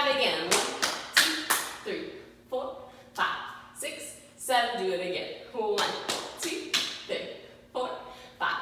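Hands clapping and tapping in a slow hand-jive rhythm, a sharp strike every half second to a second. A woman's voice vocalizes along with the moves between the strikes.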